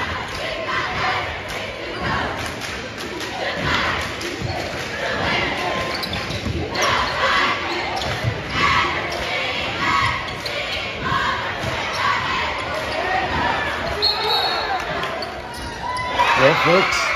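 A basketball being dribbled on a hardwood gym floor, irregular knocks amid the ongoing noise of a crowd and shouting voices, echoing in a large gymnasium.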